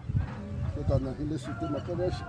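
A man speaking, with a steady low rumble underneath.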